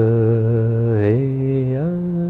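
A man chanting in long held notes, one low steady tone that steps up in pitch about a second in and again near the end.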